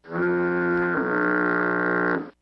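A steady, buzzy horn-like tone held on one pitch for a little over two seconds, starting and stopping abruptly, played as a sound effect.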